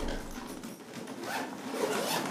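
Zipper of a hard-shell suitcase being pulled closed along its edge, a soft continuous rasp.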